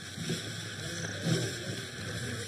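Steady outdoor hiss of open-air field ambience, with faint voices in the background.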